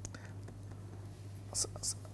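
Steady low electrical hum in a quiet room, with two brief soft hissing sounds near the end.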